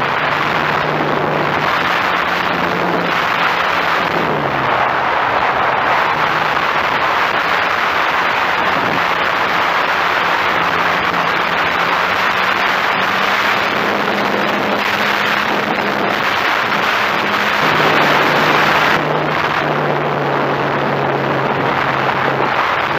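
Electric RC model airplane's motor and propeller running in flight, heard from a camera on the wing, under heavy rushing airflow noise. The propeller hum shifts up and down in pitch several times as the throttle changes.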